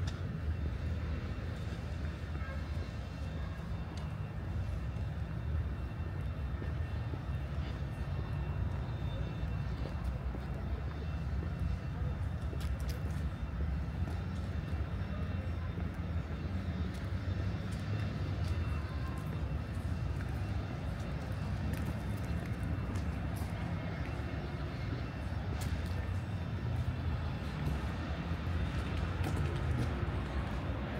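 Steady low rumble of city road traffic, with a few faint scattered clicks.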